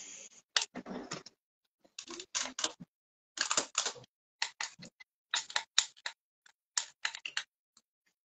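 Small clicks and scrapes in short clusters, about one cluster a second, from handling a Nintendo Switch console and Joy-Con while its rail contacts are being cleaned.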